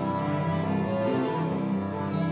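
Live instrumental passage of acoustic guitar and violins, the violins bowing long held notes over the guitar.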